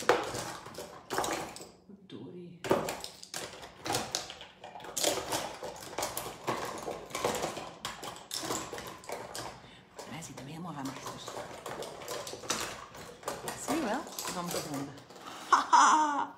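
Rummaging through make-up brushes and small cosmetic containers: a steady string of light clicks and clatters of brush handles and lids knocking together.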